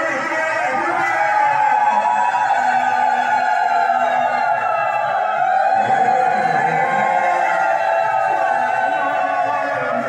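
Many voices of a seated crowd raised together in long, overlapping high notes that waver and glide, with no drums or cymbals.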